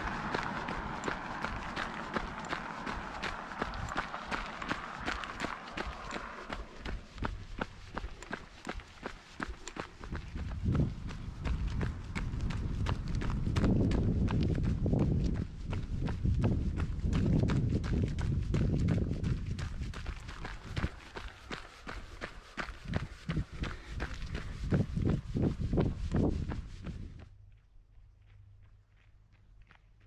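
A runner's footsteps on an asphalt road, a quick train of footfalls, with gusts of low wind rumble on the microphone. Near the end the sound cuts off suddenly to a much quieter background.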